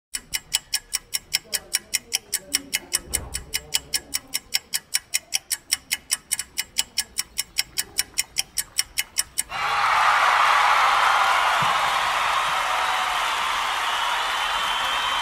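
Rapid, evenly spaced clock-like ticking, about four ticks a second. About nine and a half seconds in it stops suddenly and a loud, steady rushing noise takes over.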